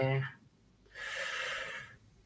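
A man's drawn-out 'eh' trailing off, then about a second in an audible breath into the microphone lasting about a second.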